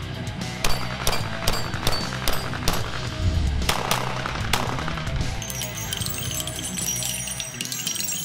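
Heavy electric-guitar music, with a quick run of sharp, loud shots from a compensated handgun over it in the first half.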